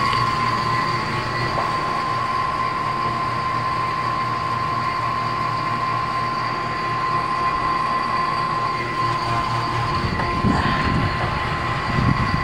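Refrigeration vacuum pump running steadily, a constant motor hum with a high whine, as it evacuates an air conditioner's refrigerant lines to clear out air after a leak.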